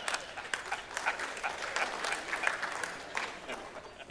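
Audience applauding, a dense patter of many hands clapping that dies down near the end.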